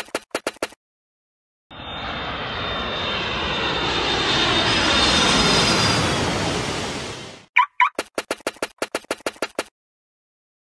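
Airplane engine sound effect: a jet-like engine noise that swells and then fades over about six seconds, its pitch slowly falling, before cutting off. It is framed by quick runs of rapid clicks at the start and near the end, with two short chirps just before the second run.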